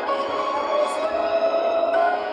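Violin playing a melody of long held notes over an instrumental accompaniment, sliding between notes near the end.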